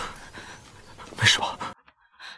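A man panting hard, out of breath after running, with one loud breath a little over a second in; the sound cuts off suddenly near the end.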